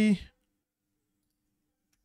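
The end of a man's spoken word in the first moment, then near silence with only a very faint steady hum.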